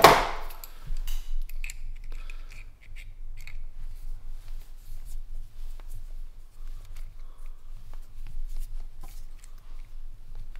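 Small irregular metallic clicks and taps of a brass lantern fuel valve being handled and worked by hand, over a faint steady low hum.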